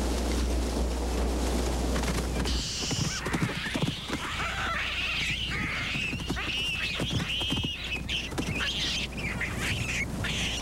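A steady low rumble, then, after about two and a half seconds, baboons calling and screaming in a string of high, wavering calls, with a few low knocks.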